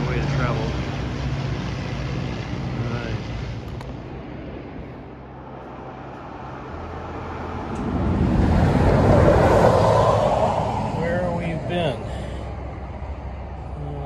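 An engine passing by: its sound swells to its loudest about nine seconds in and fades by about eleven. Before that there is a steady low engine drone.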